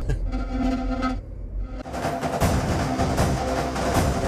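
Dramatic film score playing: held tones over a deep low rumble that thin out briefly about a second in, then swell fuller and louder from about two seconds in.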